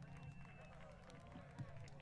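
Near silence between songs: a faint steady hum from the band's amplifiers and PA, with faint murmuring voices.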